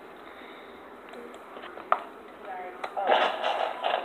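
Thin plastic water bottle crinkling close to the microphone, a dense crackling that starts about three seconds in, after a single sharp click about two seconds in.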